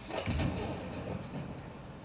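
Action sound from a TV episode: a thump about a third of a second in, followed by a low rushing, rumbling noise.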